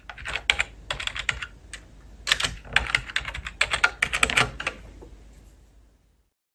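Typing on a computer keyboard: quick keystrokes in three short bursts, entering a short line of text.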